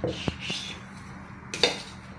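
A table knife clicking and scraping against a plastic pastry board as dough is cut: a few light taps in the first half second, then a louder clatter about one and a half seconds in.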